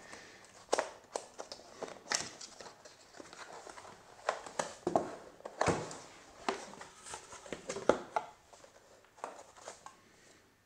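A cardboard product box being handled and opened by hand: irregular scrapes, taps and rustles as the box is turned, the lid is lifted and the packed contents are moved.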